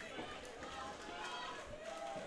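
Indistinct voices of several people talking and calling out at once around the cage, with no clear words.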